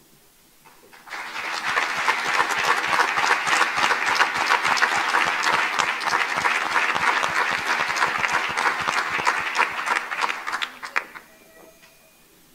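Applause from many people clapping. It swells quickly about a second in, holds steady for about ten seconds, and dies away shortly before the end.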